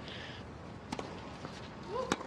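Quiet tennis-stadium ambience between points: a low, steady hush with a single faint knock about a second in.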